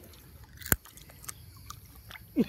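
A person chewing a mouthful of raw crab, quiet wet chewing with one sharp crunch a little under a second in and a few faint clicks after it.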